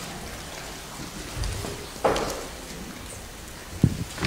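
Paper and Bible pages rustling at a lectern microphone over steady room noise. A sudden rustle comes about halfway through and dies away within half a second, and a short low bump of handling noise comes just before the end.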